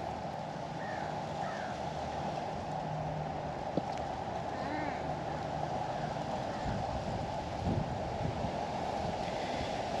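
Steady wind blowing, with a few faint short chirps now and then.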